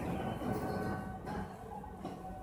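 Faint steady background noise with a low hum and no distinct sound events.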